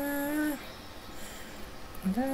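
A voice holding one steady sung note for about half a second, dipping slightly in pitch as it ends, then a pause with only faint hiss until the singing starts again right at the end.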